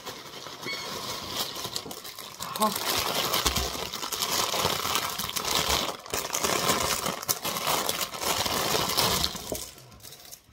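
Plastic mailer bag and wrapping crinkling and rustling as it is torn open and rope toys are pulled out, louder from a few seconds in and dying away near the end.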